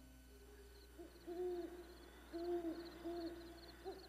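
About four short hooting calls from an animal, each a steady mid-pitched note, coming roughly once a second, with a faint high chirping repeating behind them.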